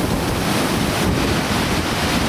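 Steady, even rush of falling water from the Pistyll Rhaeadr waterfall.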